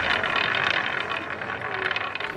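A roulette ball running around a spinning roulette wheel: a continuous, fast rattling whir.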